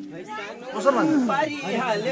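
People's voices talking, more than one at times overlapping, in a break between songs.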